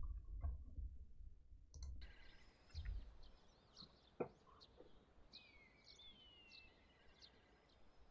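Very faint birds chirping: scattered short calls, with one longer falling whistle in the middle. A single click comes about four seconds in.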